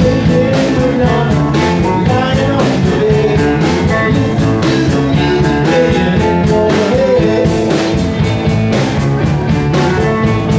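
A live band plays a rock and roll number, a man singing into the microphone over electric guitar, with steady drum hits.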